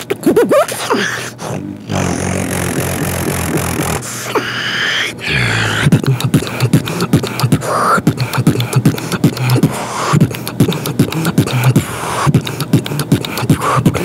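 Solo human beatboxing: quick mouth-made drum hits, then a held low humming bass tone with a wavering higher tone over it. About six seconds in, a sharp click leads into a fast, steady beat of kicks, snares and clicks.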